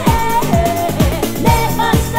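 Old-skool house record played from vinyl: a steady four-on-the-floor kick drum at about two beats a second, with a voice singing a melody over it.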